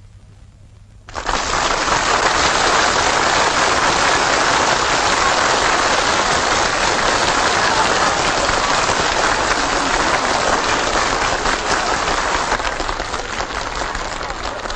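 Crowd applauding, starting suddenly about a second in and easing off slightly near the end.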